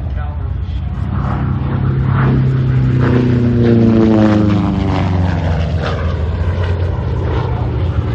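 Republic P-47 Thunderbolt's Pratt & Whitney R-2800 radial engine and propeller making a pass overhead. The sound grows to a peak about four seconds in, then the pitch falls as the fighter goes by and moves away.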